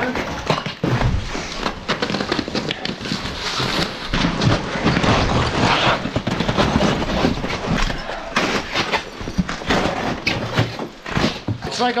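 Boots crunching and scraping on glacier ice and snow, with clothing rustling and irregular knocks, as a person clambers over broken ice blocks.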